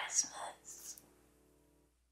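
A woman whispering a few soft, breathy words that stop about a second in, leaving only faint room tone.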